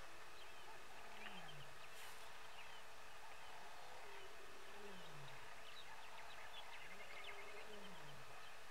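Lion giving low grunting calls, each sliding down in pitch, three times about three seconds apart, with small birds chirping faintly.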